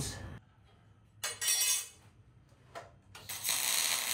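MIG welder striking tack welds. A short burst of arc crackle comes about a second in, a brief blip near three seconds, then a longer steady arc crackle from just after three seconds.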